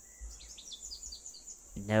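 Outdoor nature ambience: a steady, high cricket trill with a quick run of short, high bird chirps in the first second or so.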